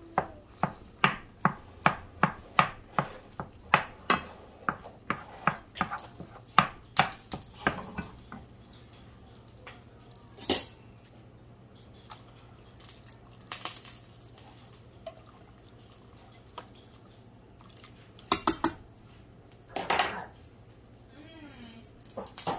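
Wooden spoon knocking and scraping against a skillet while breaking up ground beef, about three knocks a second for the first eight seconds. After that, only a few separate clinks and knocks of utensils on the pans.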